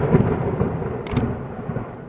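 A low rumbling whoosh-and-boom sound effect in an animated end screen, loud at the start and fading away, with a short click about a second in.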